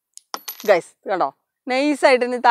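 A key and small steel pieces dropping from a homemade electromagnet and clinking onto a wooden tabletop, a few sharp metallic clicks with a brief ring early on: the magnet lets go when its battery current is switched off.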